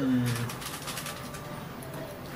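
A young child's low "mm" hum trailing off in the first half second, then faint scattered clicks of forks against a plate.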